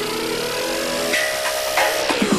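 Dubstep build-up: a synth tone rising in pitch over a hissing noise sweep, holding steady after about a second, with falling sweeps starting near the end.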